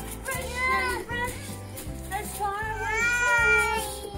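Background music with a steady beat and a high, gliding melody line that holds one long note near the end.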